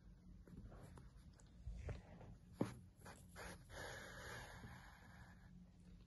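Faint rustling and a few soft taps of a needle and yarn being worked through crocheted chenille fabric and the yarn drawn tight, with a slightly sharper tap a little before halfway and a soft brushing sound in the middle.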